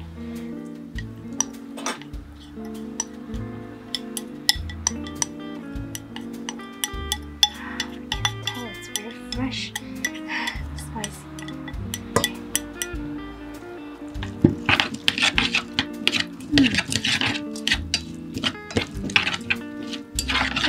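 Chopsticks scraping sauce out of a ceramic bowl and clicking against a stainless steel pot, then stirring and tossing cut cucumber in the pot, with clicking that is busiest in the last few seconds. Background music with a steady bass line plays throughout.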